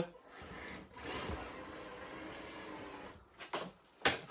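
Handling noise from a camera being moved by hand: a steady rustling hiss for about three seconds that stops suddenly, then a couple of soft clicks.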